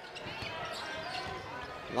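A basketball being dribbled on a hardwood court over a low, steady crowd murmur in the arena.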